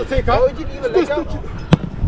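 Players shouting on the pitch, then one sharp thud of a football being struck, most of the way through.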